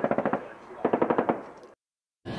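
Machine-gun fire sound effect: two short bursts of rapid shots, the first right at the start and the second about a second in.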